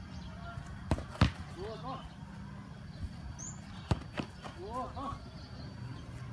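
Two football shots in a goalkeeper shot-stopping drill. Each shot is a sharp kick thud followed about a third of a second later by a second thud as the ball reaches the goalkeeper. The first shot comes about a second in and the second about four seconds in.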